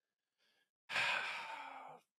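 A man's long sigh, an audible breath out into a close microphone. It starts about a second in and fades away over a second.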